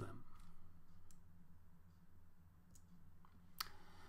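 A few faint computer clicks over a low steady hum; the loudest, near the end, advances the lecture slide.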